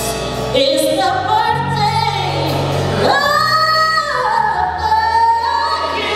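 A woman singing a gospel song into a handheld microphone over live band backing, her voice gliding between notes and holding a long note from about three seconds in.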